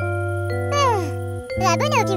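Soft children's-cartoon background music with sustained keyboard chords. About a second in, a high cartoon character voice slides down in pitch, and near the end it breaks into short squeaky babble.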